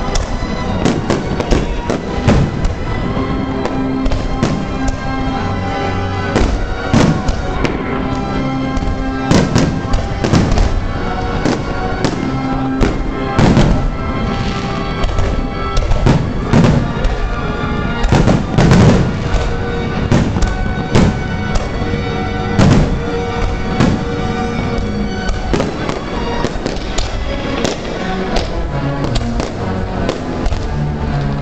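Zambelli aerial fireworks shells bursting one after another, a rapid irregular string of loud bangs about one to two a second, with music playing loudly underneath as the show's soundtrack.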